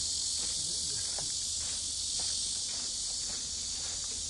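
Steady, dense high-pitched buzzing of a summer cicada chorus, with faint footsteps on a dirt path about twice a second.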